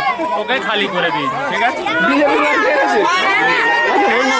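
Speech: a man talking into a handheld microphone, with other voices chattering over and around him.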